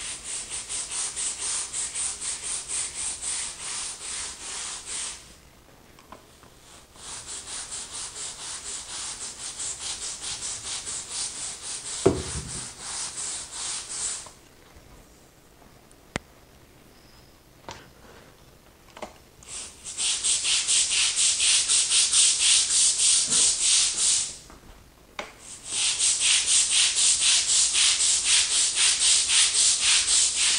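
Long-handled stiff grout brush scrubbing the grout lines of a ceramic tile floor in quick, even back-and-forth strokes, in four bouts with short pauses; the last two bouts are the loudest. A few light knocks and clicks fall in the pauses.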